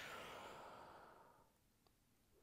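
A woman's long, soft out-breath, a sigh fading away over about a second and a half as she settles into a resting pose; a faint tick near the end.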